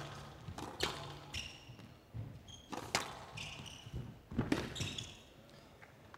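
A squash ball being struck by rackets and smacking the walls during a rally, in sharp, separate cracks a second or two apart. Short high squeaks of court shoes come between some of the shots.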